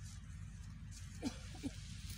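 Two short animal calls in quick succession, each sliding down in pitch, over a steady low rumble.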